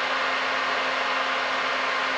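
Steady whir of a cooling fan with a low, even hum underneath, unchanging throughout.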